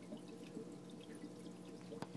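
Faint trickling and dripping of water in a home fish tank, over a low steady hum.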